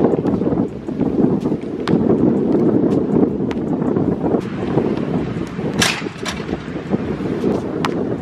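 Wind buffeting the microphone in a loud, steady rumble, with a handful of sharp knocks from a basketball bouncing and striking the hoop.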